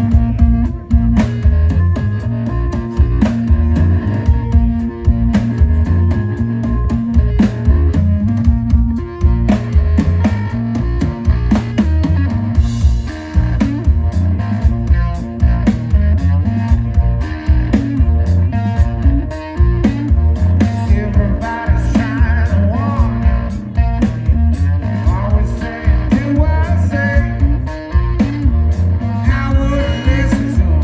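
Live rock band playing: electric guitar, electric bass and drum kit, over a steady beat.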